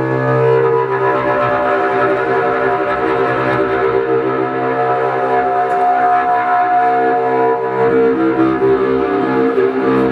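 Cello played live in long, sustained bowed notes, with a higher note held for about two seconds midway.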